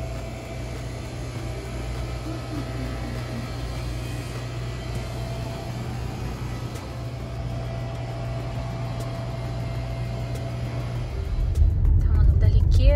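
Steady low hum of a shop interior with a faint, even higher tone above it. About a second before the end it gives way to the louder low rumble of a car driving.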